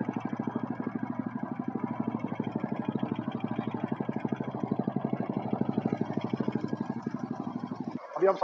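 Royal Enfield Classic's single-cylinder engine idling with a steady, rapid, even beat. The mechanic puts the engine noise down to water that got into the engine oil when the bike was submerged.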